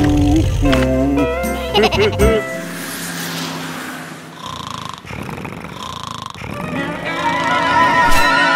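Cartoon character voices babbling and laughing over background music for about the first two seconds, then softer background music that grows louder again near the end.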